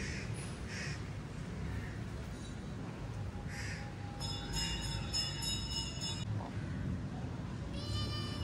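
Kittens meowing: a few short calls in the first seconds, then a longer, high meow from about four to six seconds in, over a steady low rumble.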